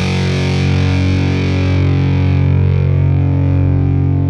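Electric guitar, a Squier Jazzmaster fitted with Fender CuNiFe Wide Range humbuckers and played on its rhythm circuit, holding one distorted chord that rings on steadily. No new strum comes, and the treble slowly fades.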